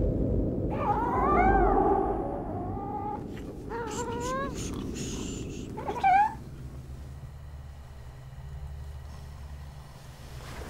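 A cat yowling three times: a long wail that rises and falls, a shorter one about four seconds in, and a sharp, loud cry about six seconds in, over a low rumble. After that only a low, steady hum remains.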